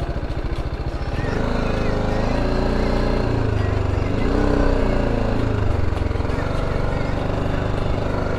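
BMW G 310 GS single-cylinder motorcycle engine idling, then revving as the bike pulls away from a stop, its pitch rising, dipping briefly about four seconds in, and rising again as it accelerates.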